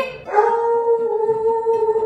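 A woman's voice holding one long, high, steady howling note, sung without words.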